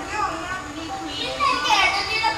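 Speech: voices of a woman and a child.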